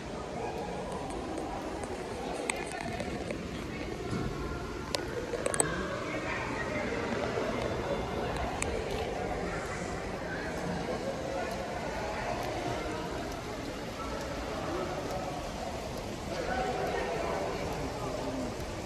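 Indistinct background voices in a large open indoor space, with a few light clicks and knocks.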